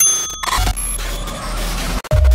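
Electronic intro music with glitch sound effects: a cluster of short, high digital beeps at the start, then crackly digital static over a low bass rumble.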